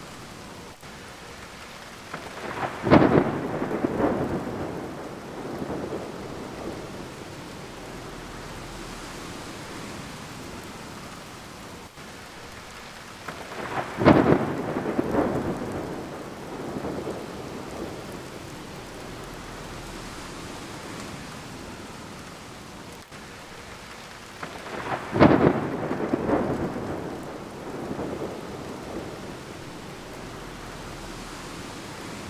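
Steady rain with three claps of thunder about eleven seconds apart, each a sharp crack that rolls off into rumbling over a few seconds.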